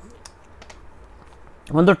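A few faint, light clicks as a pen is picked up and handled over paper. A man's voice starts near the end.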